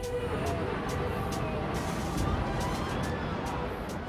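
Rumble of a World Trade Center tower collapsing, as recorded in news footage: a dense, steady rumble of noise with a heavy low end.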